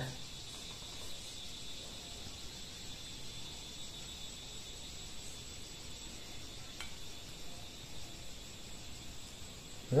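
Faint, steady, high-pitched insect chirring, with a single light click about two-thirds of the way through.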